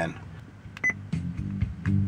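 Music from an iPhone over USB starts playing through a Kenwood KDC-X797 car stereo and the truck's factory speakers. It is faint at first, with a low, even beat, and gets louder near the end as the volume is turned up. A short electronic beep sounds just under a second in.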